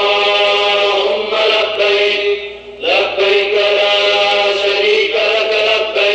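Religious chanting by a male voice in long, held phrases, with a short break for breath about halfway.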